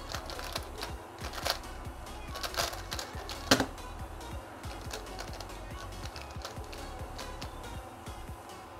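Rapid clacking turns of a GAN Skewb M Enhanced magnetic skewb in a speedsolve of about three and a half seconds, ending in a sharp knock when the solve stops. Lighter handling clicks follow, over background music.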